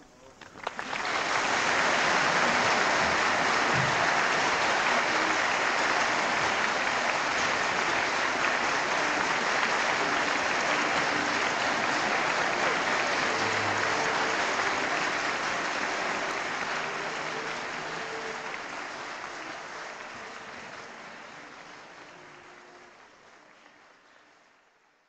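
Concert audience applauding in an old live radio recording: the applause breaks out suddenly about a second in, holds steady, then fades out gradually over the last several seconds.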